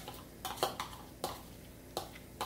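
A metal spoon scraping and clinking against a bowl while yogurt is scooped out into a pan of frying masala: a few short, separate clicks and scrapes.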